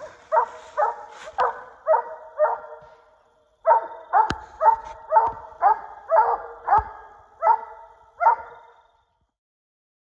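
Coonhound barking in short, even chops, about two barks a second, pausing briefly about three seconds in and stopping near the end: the chop bark of a hound treeing. A couple of sharp clicks come in the second run of barks.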